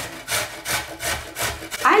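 Raw potato grated on the coarse side of a stainless steel box grater: a rhythmic rasping scrape, about five strokes.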